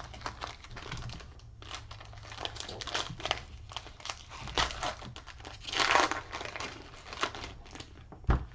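Foil trading-card pack wrapper being torn open and crinkled by hand, a run of irregular crackles with the loudest rip about six seconds in.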